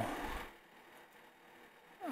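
The tail of a drawn-out spoken word, fading out within the first half second, then near silence: room tone.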